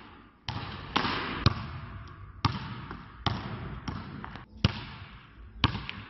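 Basketball bouncing on an indoor court floor: about eight bounces at an uneven pace, roughly one every half to one second, each trailing off in a long echo around the hall.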